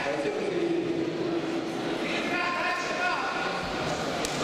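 People at ringside shouting in a large echoing hall, with long drawn-out held calls overlapping one another. A lower held call fills the first half, and higher held calls take over from about two seconds in.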